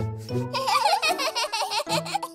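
Babies giggling over gentle children's background music with long held notes.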